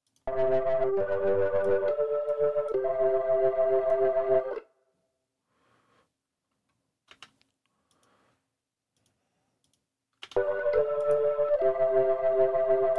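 Organ track from a live band recording played back soloed, holding sustained chords with a touch of Klon-style overdrive; playback stops about four and a half seconds in and starts again near the end. A couple of faint mouse clicks fall in the gap.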